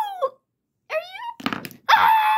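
A child voicing toy characters: a wavering drawn-out cry ends just after the start, a short rising cry comes about a second in, then a few knocks of plastic figurines being handled on a wooden floor, and a loud, long, falling wail begins just before the end.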